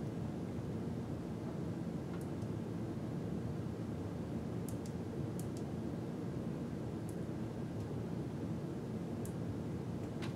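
Steady low background hum, with a handful of faint clicks from monitor buttons being pressed to turn the screen's brightness up.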